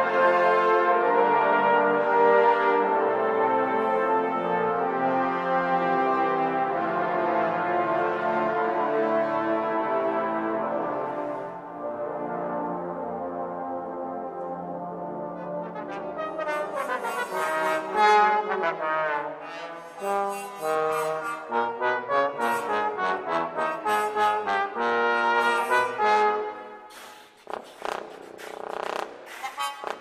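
Trombone music. A large trombone choir holds slow, sustained chords that ease off about twelve seconds in. A small trombone ensemble follows with short, detached rhythmic notes, some played with a mute.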